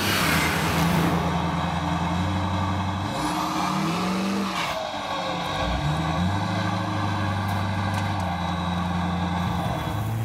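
Pickup truck engine running hard, a steady engine note over a rush of exhaust and road noise, its pitch breaking and gliding about midway before settling back to a steady note.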